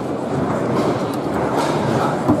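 Tournament foosball table in play: a steady rattling rumble of rods sliding and turning in their bearings and the ball moving across the playfield, with a few light ticks.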